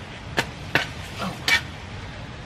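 A long-handled digging tool jabbed down into sandy ground: three sharp strikes in quick succession, with a fainter one between the last two.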